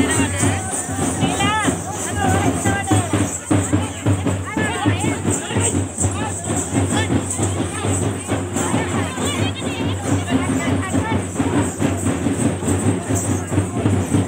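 Loud procession drumming with rapid, dense beats and a steady high jingle, with crowd voices and shouts over it.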